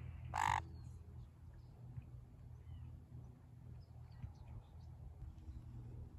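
Sun conure giving one short, harsh screech about half a second in, with a few faint bird chirps afterwards.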